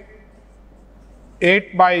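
Faint strokes of a marker writing on a whiteboard, then a man's voice starting about a second and a half in.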